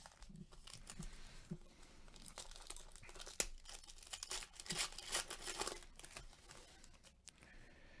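Foil wrapper of a Donruss Elite football card pack crinkling faintly as it is torn open and the cards are slid out, a run of irregular crackles with one sharp snap a little past three seconds in and the busiest crinkling around five seconds in.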